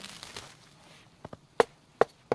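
Wood fire in a steel mangal grill crackling, with a few sharp pops. Two small ones come just past a second in, the loudest about a second and a half in, and another at the end.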